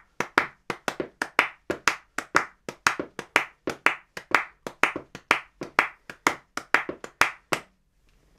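Hand claps beating out a sixteenth-note three-against-four cross-rhythm, sharp single claps in uneven groupings at roughly four a second, stopping just before the end.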